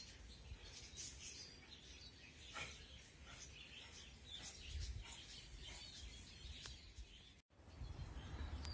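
Faint outdoor ambience with small birds chirping now and then in the distance, over a low rumble. The sound cuts out for an instant near the end.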